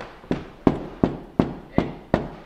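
Knuckles knocking on a painted door: five sharp, evenly spaced knocks, about three a second.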